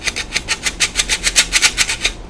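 Stainless steel squeeze-handle flour sifter being worked quickly, a rapid rasping of about eight strokes a second as flour is pushed through the mesh.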